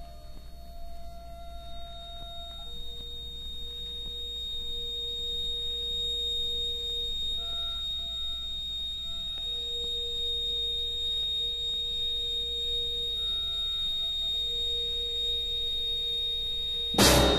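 Early electronic music: pure, sine-like tones held for several seconds each, moving between a few low-middle pitches with shorter higher notes laid over them, above a steady high whine and a low hum.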